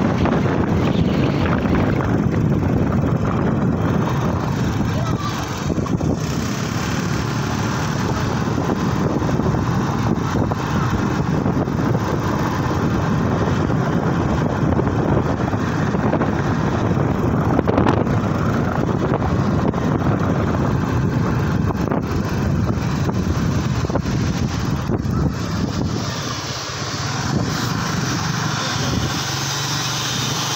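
Wind rushing over the microphone and the steady running of a motorcycle ridden along a road, a constant rumbling noise that eases a little near the end.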